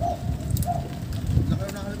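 A dove cooing in short, repeated notes, about one every half second.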